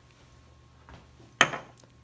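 A glass Erlenmeyer flask of water set down: one sharp clunk about one and a half seconds in, after a faint knock just before it.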